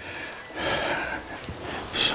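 Microfiber drying towel wiping across the wet paint and glass of a car, a soft swish lasting about a second, with a single light click near the end.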